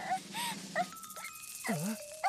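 A cartoon puppy whimpering from the anime's soundtrack: several short whines that rise and fall in pitch, with a few held musical notes underneath.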